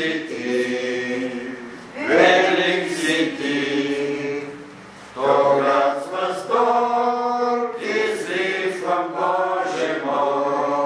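Slow singing in long held notes, in phrases of about three seconds with a short break between them.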